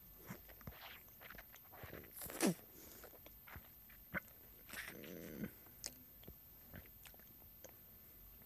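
Close-up mouth sounds of someone biting and chewing a raw lemon: soft wet clicks and crunches at irregular intervals, with one louder sweeping mouth noise about two and a half seconds in.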